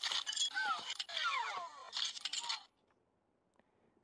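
Motorized Iron Man Mark L replica helmet responding to a voice command with its built-in sci-fi sound effect: metallic clinks mixed with sweeping, gliding electronic tones as the faceplate locks shut. It stops about two and a half seconds in.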